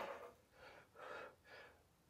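A man breathing hard from the effort of a lat pulldown set: three faint, short breaths about half a second apart, after a louder breath fades out at the start.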